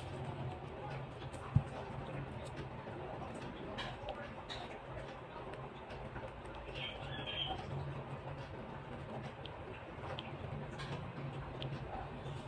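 A pen writing on paper: faint scratching and small ticks over a steady low hum, with one sharp click about one and a half seconds in.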